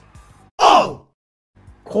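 A man's short, loud, breathy exhale like a sigh, falling in pitch, about half a second in; the sound then cuts out to total silence for about half a second.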